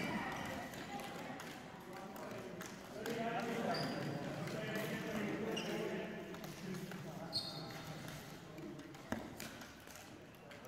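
Echoing sports hall with background voices and scattered clicks and taps of floorball sticks striking the hollow plastic ball and the ball hitting the floor, with a sharper knock late on.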